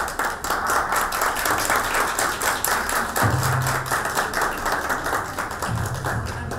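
Audience applauding: many hands clapping in a dense, steady patter that starts abruptly.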